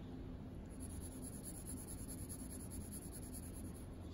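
A 2B graphite pencil shading on paper: a soft, steady scratching of quick back-and-forth strokes laying down an even tone across a value strip.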